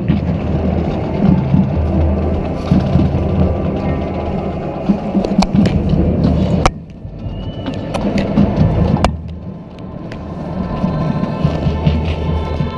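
Marching band playing, picked up by a camera on a swinging color guard flag, with heavy low rumble of moving air on the microphone. The sound drops away briefly around the middle, with a few sharp knocks, and held chords come back near the end.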